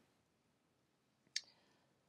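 Near silence: room tone, broken once by a single short click about one and a half seconds in.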